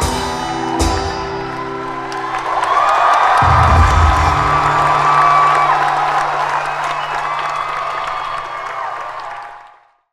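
Final strums of an acoustic guitar ringing out, followed about two and a half seconds in by audience applause and cheering over a low steady hum, fading out near the end.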